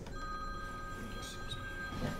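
A steady electronic tone, two pitches sounding together, held for about two seconds over a faint room hum.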